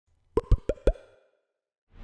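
Four quick cartoon-style pop sound effects in a row, each a short blip that rises in pitch, about six a second, all within the first second.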